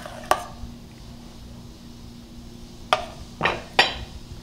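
Ceramic soup bowls, saucers and a stainless-steel ladle and pot being handled: a sharp clink soon after the start, then three knocks close together near the end. A faint steady hum runs underneath.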